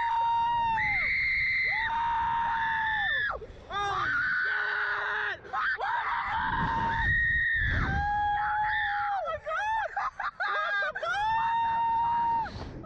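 A man and a woman screaming as a slingshot ride launches them: a series of long, high screams, each held for a second or more, with short breaks between.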